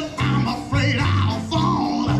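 Live band playing with a steady beat: electric guitar, keyboard and drums, with a singer at the microphone.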